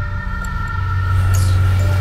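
Trailer soundtrack drone: a steady low rumble with a few thin, held high tones above it.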